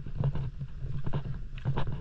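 Wind buffeting the microphone in an uneven low rumble, with irregular crunching footsteps on loose cobbles.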